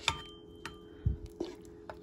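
A pause in talking: a faint steady hum with a few soft, short clicks scattered through it, and a brief hesitant "uh" from the speaker about a second and a half in.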